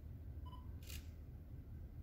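A camera taking a picture: a short electronic beep, then about half a second later the quick click of the shutter.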